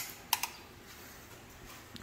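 Wall light switches being pressed: a sharp click at the start, then two quick clicks about a third of a second later.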